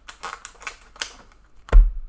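Trading cards and their packaging being handled: a few quick crisp rustles and clicks, then a single heavy thump near the end as something is set down on or knocks against the table.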